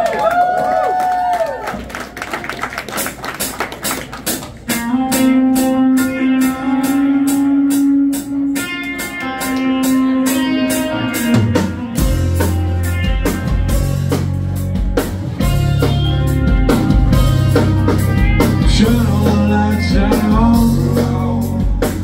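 Live rock band starting a song: sustained guitar notes over a steady drum beat, with heavy bass and the full band coming in about twelve seconds in. A short wavering tone sounds at the very start.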